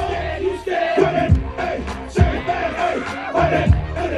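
Dance music with a thumping kick-drum beat playing over a crowd of dancers shouting and singing along.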